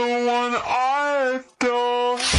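Slowed-down, reverb-heavy female singing voice holding long notes, the pitch bending in the middle, with a brief break about a second and a half in. There are no drums or bass under it.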